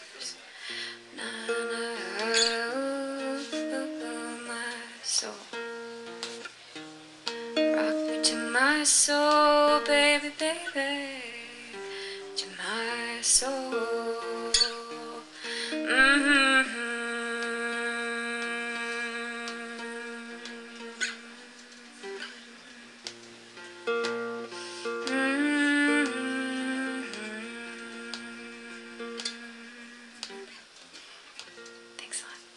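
Acoustic guitar fingerpicked under a woman's wordless singing that slides between notes. Past the halfway point the music settles into long held notes that fade out toward the end, as the song closes.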